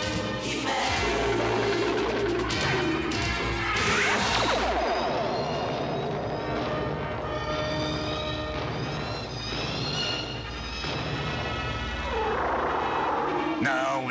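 Dramatic cartoon background score with crashing sound effects layered over it. There is a sweeping swoosh about four seconds in, and curving swoops near the end.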